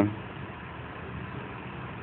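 A steady low engine hum, as of an engine idling, with a faint hiss.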